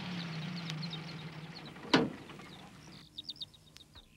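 A van engine running steadily and sagging slightly in pitch as it slows, then dropping away about three seconds in as the van stops, with small birds chirping throughout and a short cluster of chirps near the end. A short sharp falling swish about two seconds in is the loudest sound.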